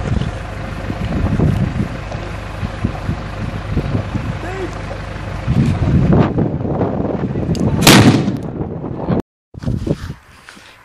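Wind rumbling on the microphone, then a single loud bang of a Cobra 6 firecracker about eight seconds in. The sound cuts out suddenly about a second later.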